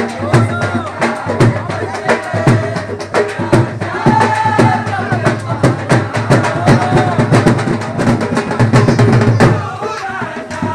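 Music led by drums: a fast beat of drum strokes, several a second, with a sliding, wavering melody line over it.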